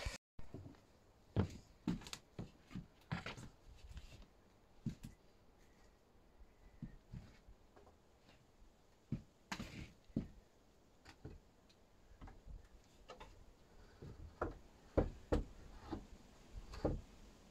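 Scattered light knocks and bumps of wood as a frame of wooden slats is handled and fitted into a window frame, to be tapped tight.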